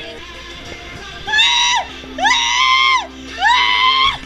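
A woman's voice singing three long, high notes loudly, each bending down at its end, over music playing in the background.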